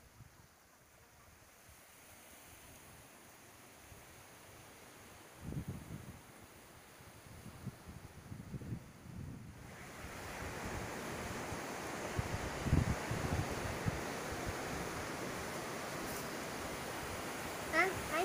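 Small waves washing onto a sandy beach, with wind buffeting the microphone in a few low thumps. About ten seconds in it becomes a louder, steady rush of sea and wind.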